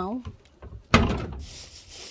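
A single loud thud about a second in as a load of rubbish is thrown into a plastic wheelie bin, with a brief rattle after it.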